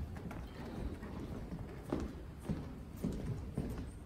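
Footsteps of several people walking in procession, shoes knocking irregularly, about one step every half second, on steps and a hard floor.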